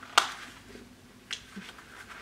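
Two sharp clicks: a loud one about a quarter second in and a weaker one just past a second in.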